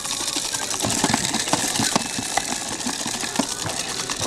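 Toy blender's blending noise from a Bright Starts Giggling Gourmet Rise 'n Dine Busy Cafe play set: a steady rattly whir, like a small motor running.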